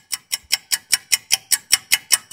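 Clock-ticking sound effect, quick and even at about five ticks a second, used as a 'thinking' gag.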